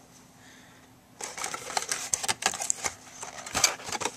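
A cardboard product box being handled: irregular clicks, taps and rustles that start about a second in.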